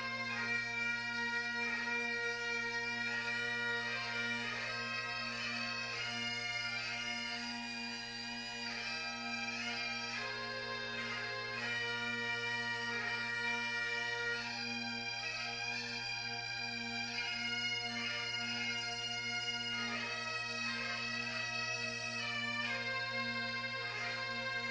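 Bagpipe music from a pipe band: a melody played over steady, unbroken drones.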